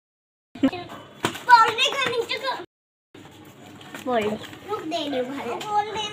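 Young children talking and calling out in high voices, broken by two brief stretches of total silence, one at the start and one about three seconds in.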